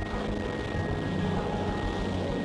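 AV-8B Harrier jump jet's turbofan running at full thrust in a vertical takeoff: a steady, even jet roar with a thin high whine held through it.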